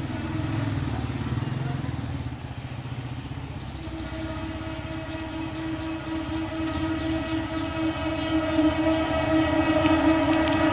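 Diesel-electric locomotive approaching with a low engine rumble; about four seconds in its horn starts one long steady blast that carries on and grows louder as the train closes in.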